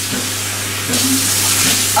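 Bathroom sink tap running into the basin with hands rinsing under it, a steady hiss of water that grows stronger about a second in. A steady low hum runs beneath it.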